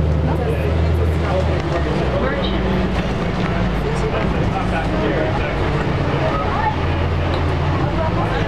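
Neoplan AN440 transit bus heard from a seat inside, its diesel engine running with a steady low drone. People's voices chatter over it.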